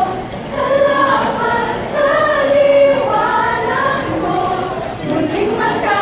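Mixed-voice a cappella group singing together in harmony, without instruments, the voices amplified through microphones. About two seconds in they hold a long note.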